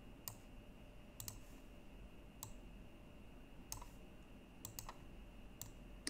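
Faint, irregular clicks of a computer mouse, about eight in six seconds, over a faint steady high-pitched tone.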